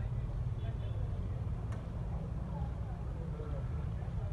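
Steady low rumble with faint voices in the background and a single sharp click a little under two seconds in.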